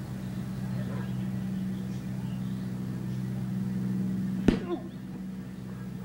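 A kick landing on a hand-held padded kicking shield: one sharp thud about four and a half seconds in, over a steady low hum on the old recording.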